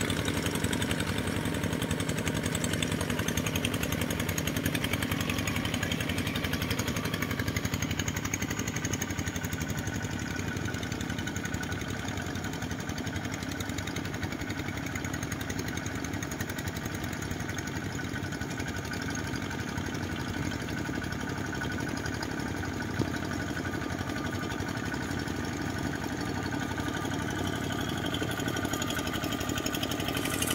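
Single-cylinder Kubota diesel engine of a two-wheel walking tractor, running steadily as the tractor drags a leveling board through flooded paddy mud.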